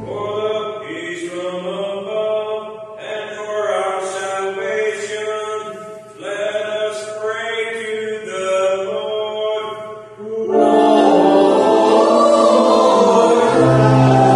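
A single voice chanting a sung line of the liturgy in three phrases. About ten and a half seconds in, the organ enters with full sustained chords, and a low bass note joins near the end.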